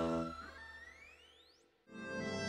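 Title-sequence music: a held chord fades out, then a synthesized tone sweeps steadily upward in pitch for about a second and fades away, leaving a moment of silence just before the end.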